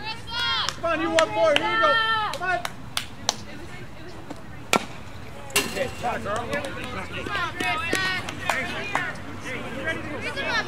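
High-pitched young voices shouting and cheering at a softball game, in two spells, with a single sharp crack a little before the middle and a couple of fainter clicks just before it.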